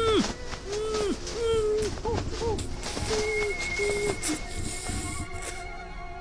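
A man's choked, strangled cries, about eight short calls that rise and fall over the first four seconds, with clicks among them. A steady high tone and held music notes come in from about three seconds and carry on.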